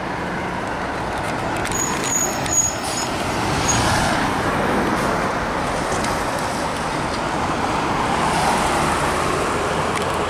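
Road traffic at a street intersection: a steady wash of car and truck engines and tyres that swells as vehicles pass, with a brief high-pitched squeak about two seconds in.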